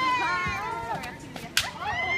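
Kendo kiai shouts: a long held cry that trails off, then a sharp crack of a bamboo shinai strike about one and a half seconds in, followed by another shout.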